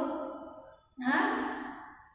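A woman's voice: the end of a spoken phrase fading out, then, about a second in, a drawn-out vocal sound that trails off without forming clear words.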